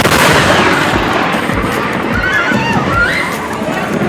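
A very close lightning strike: a sharp thunder crack right at the start, then loud crackling noise that fades over about a second and a half. Shouting voices follow.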